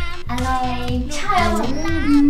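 Upbeat background music with a steady beat and a young-sounding voice singing.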